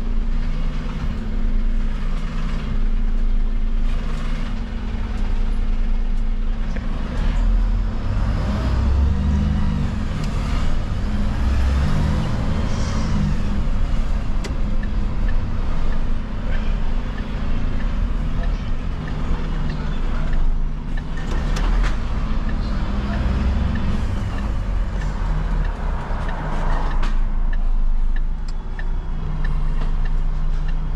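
Diesel engine of a refuse truck heard from inside the cab as the truck drives, a steady low hum that grows louder in stretches as it pulls and accelerates, about a third of the way in and again past two-thirds.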